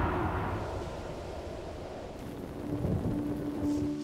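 Low rumble of a trailer sound effect fading away, then a quiet held musical note coming in about three seconds in.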